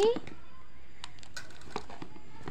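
A few faint, scattered light clicks and taps from a plastic toy car and its cardboard box being handled.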